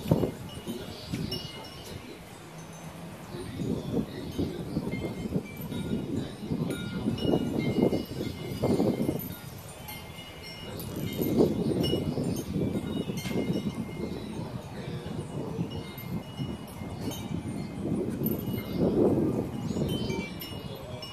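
Hanging wind chimes tinkling with scattered bright tones as they sway. A low rushing sound swells and fades several times underneath.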